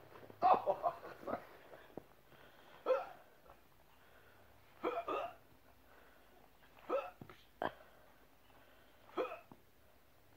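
A person hiccuping repeatedly, a short voiced hic about every two seconds.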